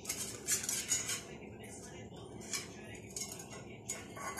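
A small stainless-steel bowl clinking and scraping on a stone floor as kittens nose and lick at it. There is a quick run of rattles in the first second or so, and a few more later.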